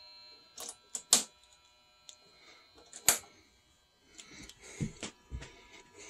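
Sharp clicks and clacks of a spring-loaded alligator clamp and its cable being handled and clipped onto a battery terminal, the loudest about a second in and about three seconds in, followed by softer knocks and rustles.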